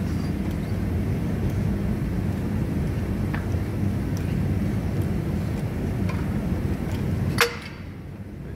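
Workshop press forcing the hub and wheel bearing out of a brake disc, with a steady low mechanical drone while the load builds. About seven seconds in comes a single loud crack as the hub breaks free of the disc, and the drone drops away right after.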